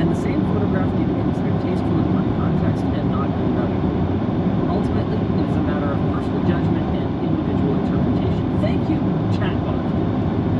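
Steady low rumble of tyres and engine inside a moving car's cabin.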